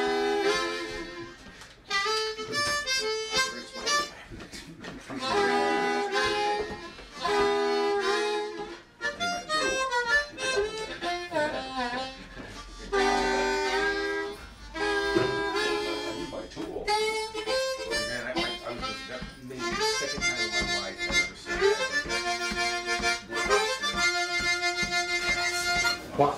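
Blues harmonicas playing short phrases and held chords, with brief pauses between them. Near the end a quick repeated chord figure.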